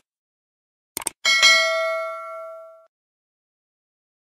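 A quick double mouse click, then a single bell ding that rings and fades away over about a second and a half: the click-and-notification-bell chime of a subscribe-button animation.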